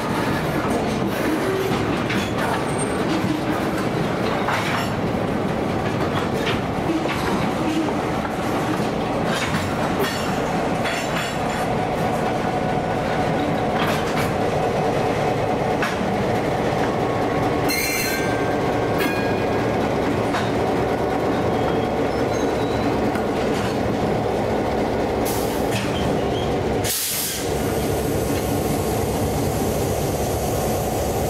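An EMD GP9 diesel locomotive running as it moves a cut of freight cars, its engine most prominent as it passes in the middle. Steel wheels rumble and clack over rail joints and crossing rails, with a brief wheel squeal about two-thirds of the way through.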